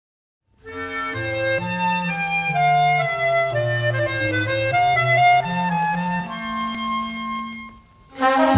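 Accordion playing a solo melody over bass notes, the instrumental opening of a French chanson. It starts after half a second of silence and dies away near the end.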